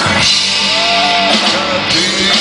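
Live rock band playing an instrumental passage between sung lines: electric guitar and drums, with a loud hit at the start and a held melody line that bends in pitch.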